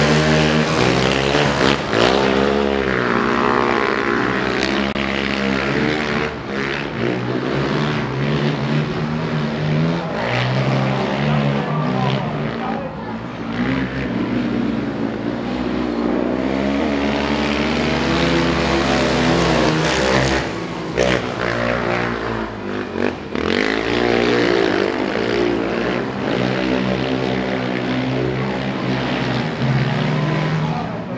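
Two racing quad bikes' engines running hard around a dirt speedway oval, their pitch rising and falling over and over as the riders accelerate and back off.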